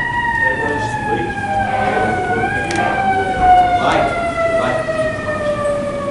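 A siren wailing: its pitch climbs just before the start, then falls slowly and steadily over several seconds. A few short knocks sound near the middle.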